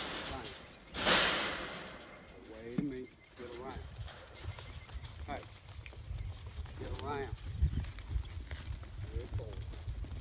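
Sheep bleating several short times as a herding dog works the flock, with irregular hoofbeats on dirt. A brief loud rush of noise comes about a second in.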